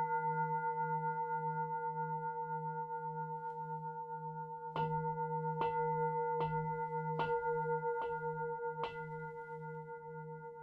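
A large singing bowl struck with a padded mallet, its several pitches ringing on with a slow wavering hum. The ring fades for the first few seconds, then six strikes about a second apart start about halfway through, each one renewing it.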